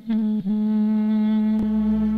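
Clarinet playing: a few quick repeated notes, then one long held note. A sharp click sounds near the end, and a low rumble comes in just after it.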